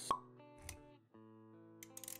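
Logo-animation intro music with a sharp pop sound effect right at the start. Sustained and plucked notes follow, with a low thump a little before the middle and a brief break about halfway through.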